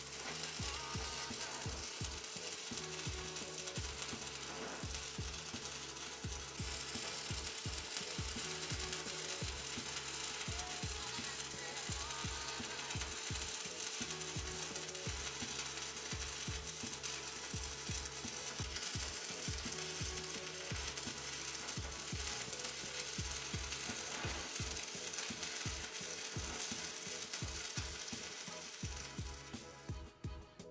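Stick-welding arc crackling and sizzling steadily as a 6011 electrode burns along an overhead bead. Background music with a steady bass beat plays under it.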